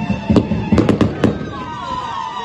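Fireworks going off: five sharp bangs in under a second, starting about a third of a second in, over music with a steady beat.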